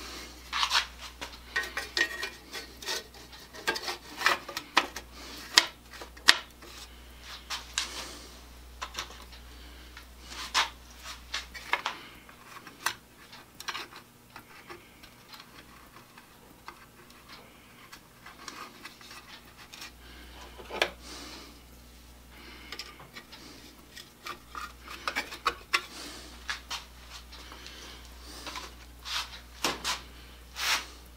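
Handling noise as the cover is fitted back onto a small rotisserie motor housing: irregular clicks, scrapes and light knocks. The sounds thin out in the middle and pick up again near the end.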